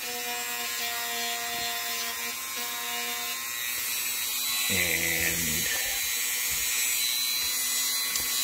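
Handheld rotary tool (moto tool) with a small wire-brush wheel running steadily at a slightly raised speed, brushing a small metal motor brush clip to polish off old solder and grime.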